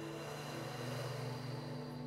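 A long inhale drawn in through the mouth over the tongue in sitali (cooling) breath, heard as a soft hiss of air lasting about two seconds. Sustained tones of soft background music continue underneath.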